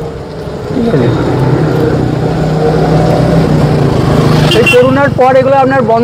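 Steady, even hum of a vehicle's motor, heard from on board while it moves. A voice starts talking over it again in the last second or so.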